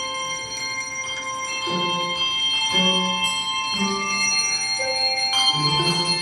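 Handbell choir playing a slow piece: notes and chords rung about once a second, each left ringing long over the others, with low bass bells coming in after the first couple of seconds and the music growing louder.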